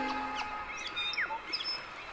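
The tail of a music sting dies away in the first half-second. After it come scattered short bird chirps and whistles, some falling and some rising in pitch.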